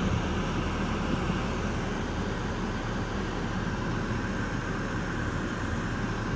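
Steady car cabin noise heard from inside the car: an even low rumble with a hiss over it, unchanging throughout.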